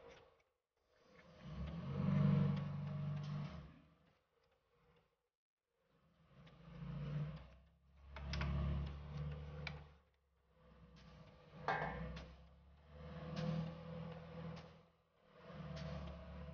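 Brush scrubbing the inside of a scooter's CVT case, in strokes of a few seconds each with short pauses between.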